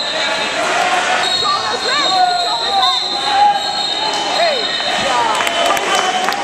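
Wrestling shoes squeaking on the mat in short rising and falling chirps as two wrestlers scramble, over indistinct voices in a large hall and a faint steady high whine.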